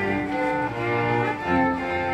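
String quartet playing sustained bowed notes, with a cello line under the violins and the harmony moving every half second or so.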